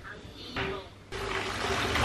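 Bath tap running into a bubble bath, a loud rushing of water that cuts in suddenly about halfway through.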